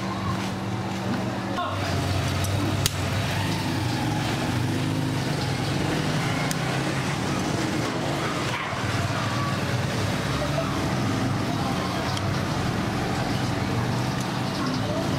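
A motor vehicle engine running steadily nearby, its low hum shifting pitch a little under two seconds in, with a few faint sharp clicks over it.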